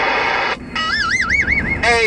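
CB radio receiving: a transmission cuts off about half a second in, then a warbling electronic tone plays for about a second, wobbling up and down about five times a second, like a roger beep marking the end of the other station's call. A new voice transmission comes in near the end.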